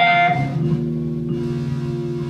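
Live saxophone, keyboard and fretless bass trio. A saxophone note fades out about half a second in, leaving keyboard and bass holding low steady notes.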